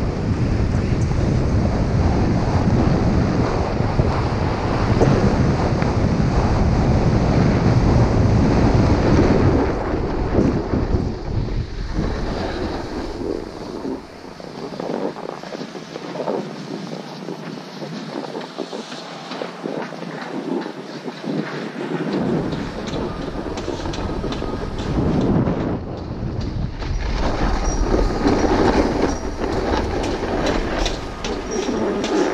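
Wind buffeting the action camera's microphone over the hiss and chatter of a ski or snowboard running on groomed snow at speed. About halfway through the rumble dies away as the rider slows almost to a stop, leaving a quieter scraping of snow, and it picks up again near the end.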